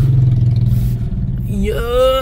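Car engine and road rumble heard from inside the cabin, a steady low hum at light throttle as the car creeps along a rough dirt lane. The hum eases off a little past a second in, and a man starts talking near the end.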